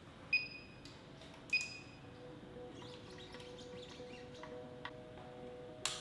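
Two short electronic beeps about a second apart, each starting with a click, from button presses on a benchtop lab instrument. Soft background music with held notes comes in about two seconds in, and a sharp click sounds near the end.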